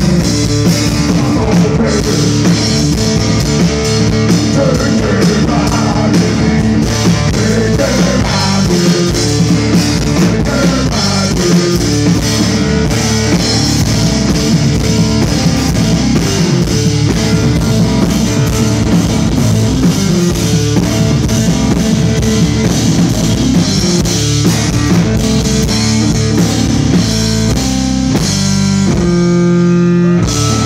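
Live rock music from a Fender Rhodes electric piano and a drum kit, played loud in an instrumental stretch without vocals.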